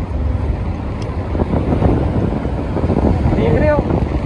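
Steady low rumble of road traffic along a busy city street, with a voice speaking briefly near the end.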